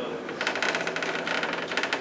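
A fast, even rattle of small sharp clicks inside a bus, starting about half a second in.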